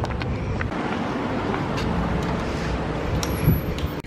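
Steady outdoor noise of road traffic with wind on the microphone, and a brief thump near the end.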